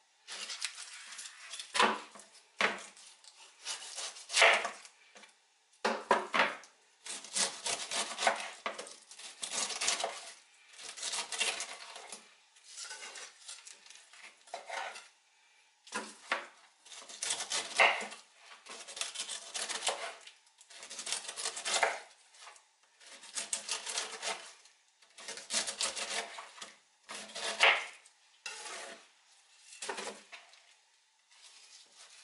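Kitchen knife cutting the rind off a whole pineapple on a wooden cutting board: a string of separate slicing strokes, about one every second or two.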